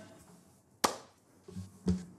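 Handling noise on an acoustic guitar: a sharp tap a little under a second in, then a couple of soft knocks near the end.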